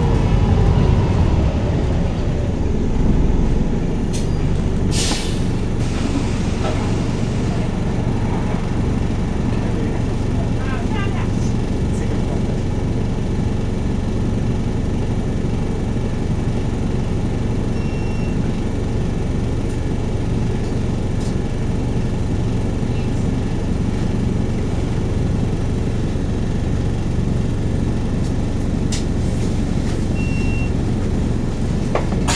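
Volvo B5TL double-decker bus's four-cylinder diesel engine heard from on board, winding down in pitch as the bus slows at first, then running steadily at idle while the bus stands. A short hiss of compressed air comes about five seconds in.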